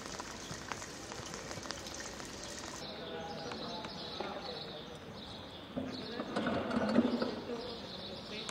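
Outdoor football training ambience: indistinct players' voices with scattered light knocks, and a louder call about six to seven seconds in.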